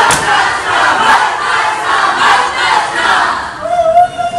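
A large crowd of young people shouting and cheering together.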